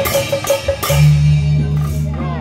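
Beiguan ensemble percussion: sharp, dry strokes about four a second, then a deep stroke about a second in that keeps ringing, typical of the large hanging gong.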